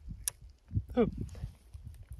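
A small crusted meteorite fragment snapping onto the magnet on the tip of a metal magnet cane with a single sharp click, the stone pulled up by the magnet.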